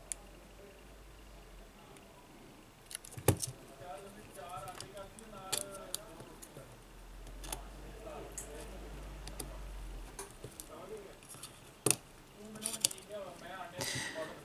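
Scattered clicks and small clinks from handling an opened Sony Xperia M4 Aqua smartphone and its internal parts as it is taken apart. The sharpest click comes about three seconds in, with more near the end.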